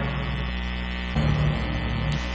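Steady electrical mains hum with a low buzz, and a low sustained tone that swells briefly in the second half.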